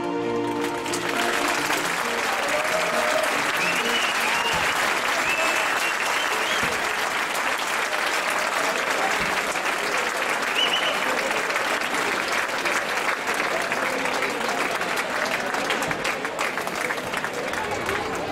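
Audience applauding and cheering, a dense, steady clapping, as a piece of music stops about a second in.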